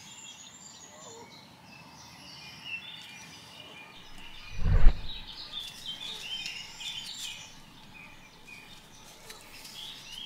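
Wild birds chirping and singing in the background, with a single dull thump about halfway through.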